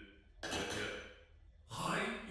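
A short breathy exhale, like a sigh, lasting under a second, with a voice starting to speak near the end.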